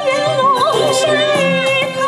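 A woman singing a Hakka mountain song, her melody wavering through ornaments and then settling into a long held note, over instrumental accompaniment with drum strokes.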